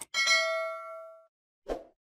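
Subscribe-button animation sound effect: a short click, then a bright bell ding that rings out and fades over about a second. Another short click comes near the end.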